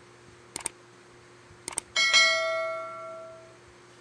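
Subscribe-button animation sound effects: two quick double clicks, then a bright bell chime about halfway through that rings and fades out over about a second and a half.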